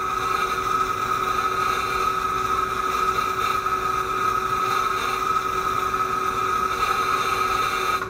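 Simulated flux-cored arc welding sound from a Lincoln Electric VRTEX 360 virtual-reality welding trainer: a steady hiss with a constant high tone under it, stopping near the end as the weld pass finishes.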